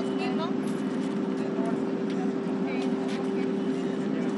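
A steady low mechanical hum, several held tones with a noisy rumble under them, running without change beneath scattered faint voices.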